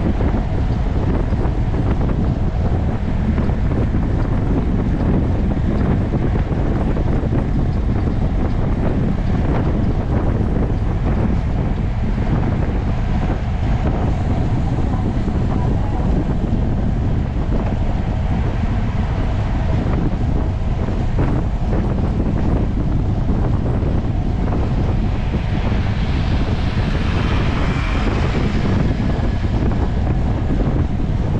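Wind buffeting the microphone of a camera on a road bike moving at about 36–38 km/h, a loud, steady low rush. A brighter hiss rises for a few seconds near the end.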